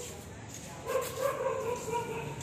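A street dog whining: one drawn-out, fairly steady note starting about a second in.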